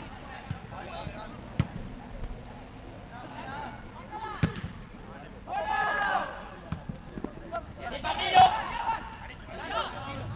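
A football being kicked, a few sharp thuds, with players shouting on the pitch; the loudest moment is a shout a little before the end.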